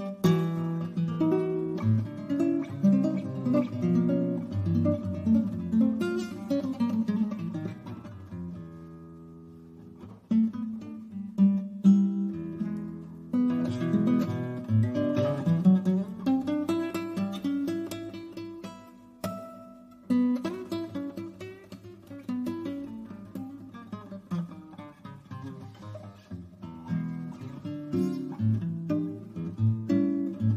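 Solo acoustic guitar played by plucking, with a melodic line over bass notes. About eight seconds in the playing thins to a few held notes and dies down, then resumes with quicker runs.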